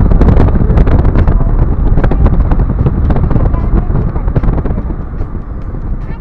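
A car driving along a road: heavy low rumble of road and wind noise, with wind buffeting and crackling on the microphone. It grows quieter toward the end.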